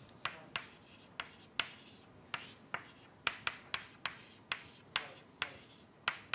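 Writing on a lecture board: an irregular run of sharp taps and short scratches, about three a second.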